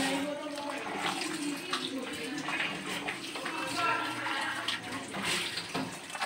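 Wet stirring and sizzling as chicken pieces are turned through a thick qorma gravy in a nonstick wok with a silicone spatula, the chicken just mixed into the fried masala; an irregular, continuous churning.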